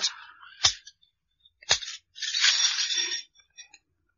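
Two sharp metallic clicks about a second apart, then about a second of metallic rustling: a radio-drama sound effect of handcuffs being unlocked with a key and taken off.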